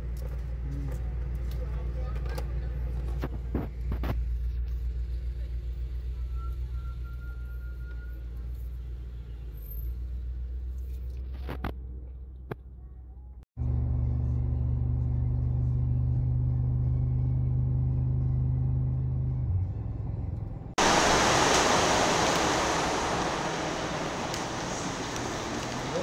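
Car cabin sound: a steady low engine hum with a few clicks while stopped, then, after a cut, the steady low drone of the car driving on a highway. Near the end a loud, even rushing noise takes over.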